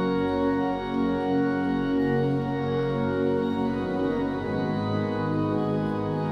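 Two-manual, 27-stop Sanus organ playing slow, sustained chords that change every second or so.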